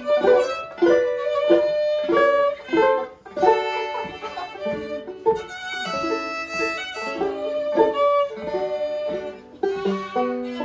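Fiddle and banjo playing a tune together: the fiddle bowed over a steady run of picked banjo notes.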